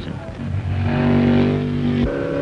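Racing car engine running at a steady pitch. It swells in about half a second in and cuts off abruptly at the end.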